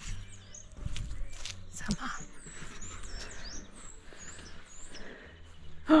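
Small birds chirping: a string of short, high chirps throughout, over a low rumble.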